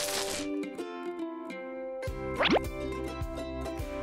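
Cheerful background music for children, with cartoon sound effects: a short whoosh at the start and a quick rising 'plop' glide about two and a half seconds in, as a bass line comes in.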